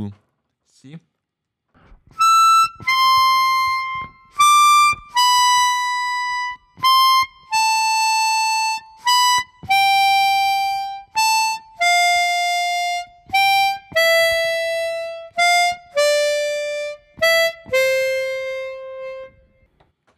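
Chromatic harmonica playing a descending exercise in thirds: single notes in short-long pairs a third apart, stepping down the scale from a high E to C. It starts about two seconds in, and the last note is held longer.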